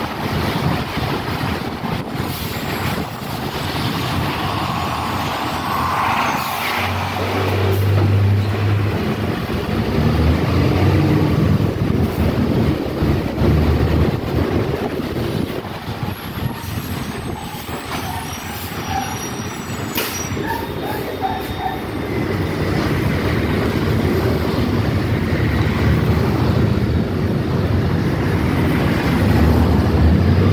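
City feeder bus heard from inside as it drives along: the engine is running and there is steady road noise, with the low engine note coming and going. A single sharp click comes about twenty seconds in.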